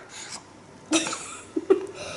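A small child coughing: one short cough about a second in, then two quick ones near the end.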